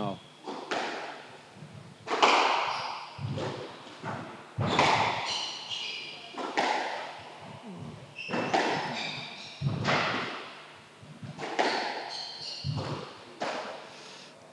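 A squash rally: the ball cracks off the rackets and thuds into the walls about once a second, each hit echoing around the enclosed court. Court shoes squeak sharply on the wooden floor between the hits.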